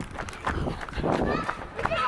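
Running footsteps of a person in sandals on an asphalt path, with a voice heard now and then between the steps.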